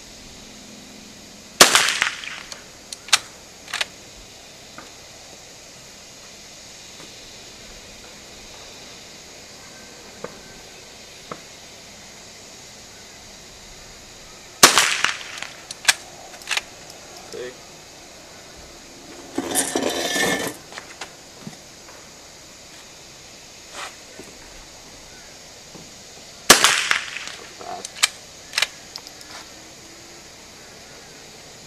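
Three rifle shots from a scoped bolt-action rifle, about twelve seconds apart, each followed by a few sharp clicks, with a short clattering burst in between.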